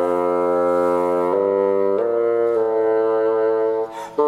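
Solo bassoon playing long, held low notes that move to a new pitch a few times, with a brief break near the end.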